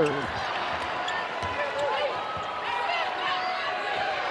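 Basketball arena game sound: a steady hum of crowd noise with a ball bouncing on the hardwood court as players run up the floor.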